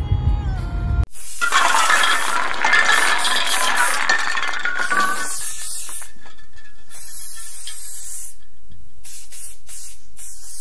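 A low in-car rumble, cut off about a second in by the sound effects of an ink-splatter outro animation: a sudden loud splattering, shattering burst lasting about four seconds, then a steadier hiss.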